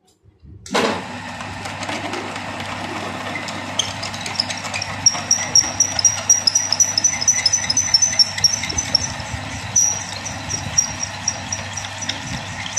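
A lathe's motor switches on about a second in and runs steadily with a low hum, spinning a metal pulley blank against a twist drill held in the tailstock. From about four seconds in, the drill's cut adds a rapid, high-pitched chirping squeal.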